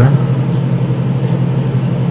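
A steady low mechanical hum, like a motor or engine running in the background, unchanging throughout.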